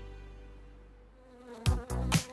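Soft music fading away, then a cartoon bee's buzzing sound effect that starts about a second and a half in as the bee character flies in.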